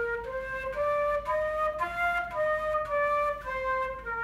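Concert flute playing the first notes a beginner learns: a five-note scale climbing step by step and coming back down, each note held about half a second.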